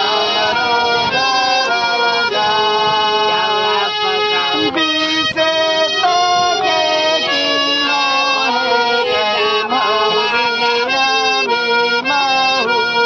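A harmonium played in chords that change every second or so, with a man singing along over it into a microphone.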